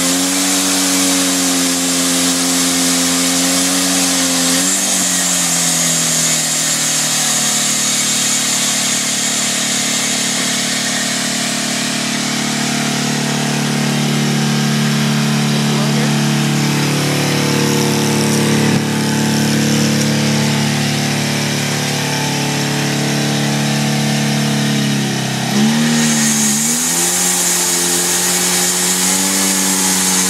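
Motorcycle engine driving a homemade band sawmill, running steadily with a high hiss from the band blade. The engine note drops lower around the middle, then dips sharply and picks back up near the end, where the hiss returns.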